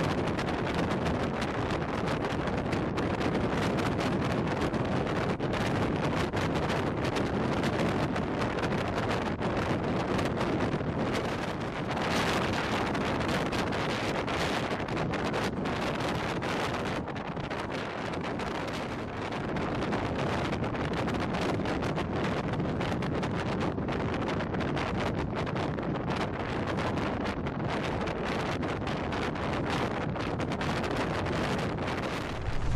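Steady road and wind noise heard from inside a vehicle cruising on an expressway: an even rush of tyres and air, swelling slightly about twelve seconds in and easing a little around eighteen seconds.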